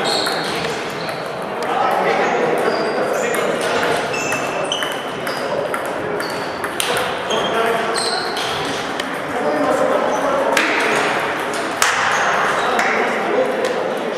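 Table tennis balls ticking on tables and paddles in several rallies at once, a quick irregular patter of light clicks, over voices talking in the background.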